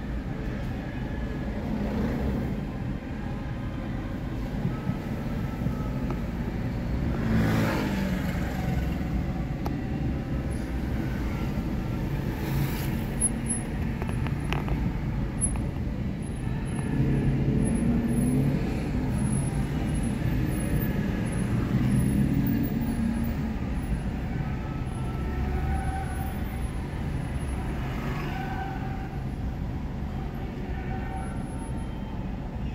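Slow city traffic heard from inside a car: a steady low engine and road rumble. A vehicle passes louder about 7 to 8 seconds in, and nearby engines swell again around 17 and 22 seconds.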